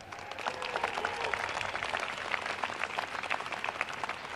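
Audience applauding, a dense patter of many hands clapping that starts suddenly and eases off near the end.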